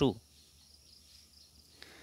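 A man's voice ends a word, then near silence: faint steady background hiss, with a tiny click near the end.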